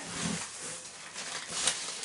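Rustling and crinkling of plastic bags and crumpled packing wrap as parts are handled and pulled out of a cardboard box.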